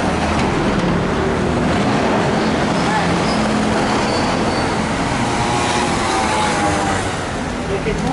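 City street traffic at close range: a small truck and then a van driving past, with engine rumble and tyre noise, easing a little near the end.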